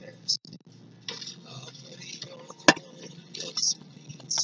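Low, steady car-cabin noise with scattered light clicks and rustles. One sharp click comes about two and a half seconds in.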